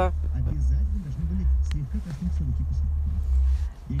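Steady low rumble inside a car cabin, with a low voice murmuring faintly over it.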